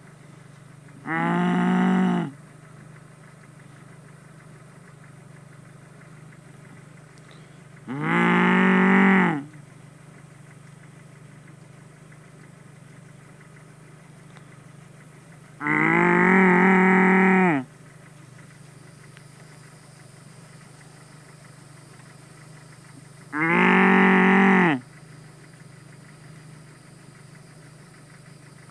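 A person mooing loudly to call cattle: four long, drawn-out moos about seven seconds apart, each sliding down in pitch at the end.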